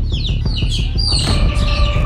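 A small bird chirping over and over, short falling chirps about three a second, over a low steady hum.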